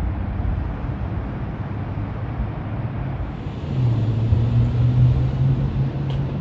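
Steady city traffic rumble, joined about halfway through by the low, even hum of a nearby vehicle engine that grows a little louder and holds.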